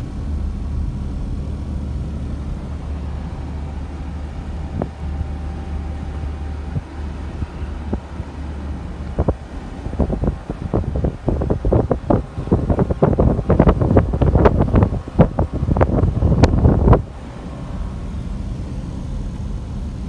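Steady road and engine noise inside a moving car. From about halfway in, wind buffets the microphone in irregular gusts, louder than the car, then stops suddenly a few seconds before the end.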